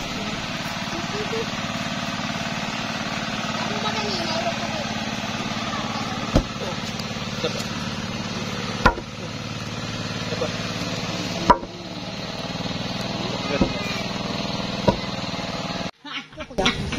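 Four sharp knocks a few seconds apart as soil is tamped down around a wooden post set in a hole, over a steady droning hum.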